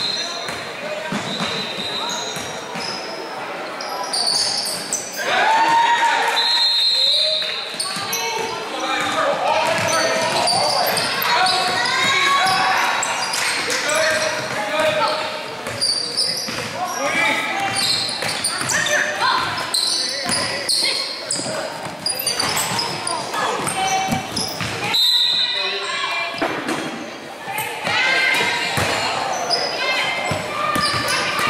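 Basketball dribbling on a hardwood gym floor while players, coaches and spectators shout and call out, all echoing in a large gym.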